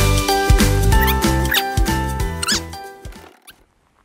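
Background music with a bass line and melodic notes, including a few short rising squeaky glides, fading out over the last second.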